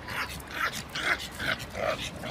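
A pug dog making short, repeated sounds, about three a second.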